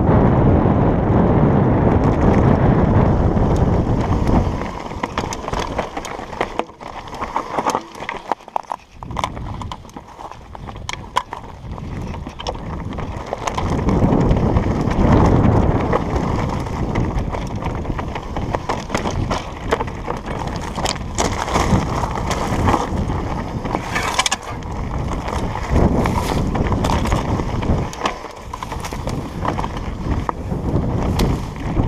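Trek Slash 8 mountain bike rolling down loose rocky singletrack: tyres crunching over stones, with many quick rattles and clicks from the bike over the bumps. Wind rushes over the microphone, loudest in the first few seconds and again about halfway through.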